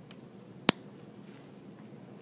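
Dissecting scissors snipping through a pig's rib cage: one sharp, loud click about two-thirds of a second in, with a much fainter click near the start.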